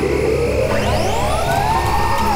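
Electronic background music with a sci-fi sound effect of a gadget powering up: several whines climbing steadily in pitch together.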